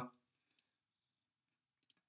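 Near silence with a few faint computer-mouse clicks: one pair about half a second in and another near the end.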